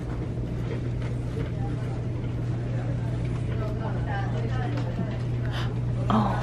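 Store ambience while a shopping cart is pushed down an aisle: a steady low hum and rolling rumble, with faint voices in the background.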